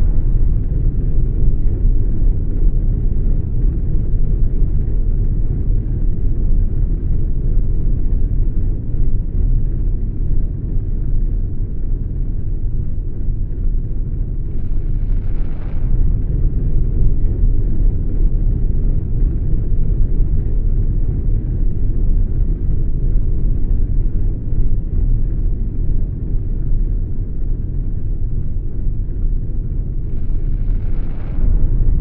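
A steady, deep rumbling drone, with a brief hissing whoosh that swells and fades about halfway through and another at the very end.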